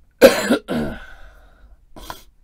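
A man coughing twice, loud and sudden, the second cough trailing off with a falling, voiced tail.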